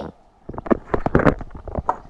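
A quick run of small knocks, clicks and rubbing from the handheld camera being handled and swung around, starting about half a second in after a brief lull.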